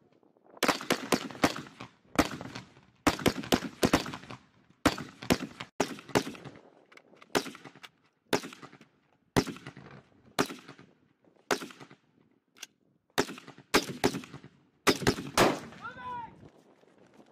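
Close-range rifle fire from carbines: quick strings of two to four sharp shots, repeated about once a second.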